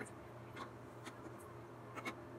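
Faint clicks and scrapes of a metal utensil against a small frying pan, a few light taps spread over the two seconds, over a low steady hum.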